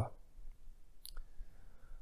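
A pause in a man's speech: faint room hum with a brief, small click about a second in.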